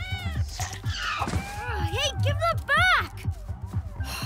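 A cartoon cat meowing several times, rising-and-falling calls, over background music with a recurring bass beat.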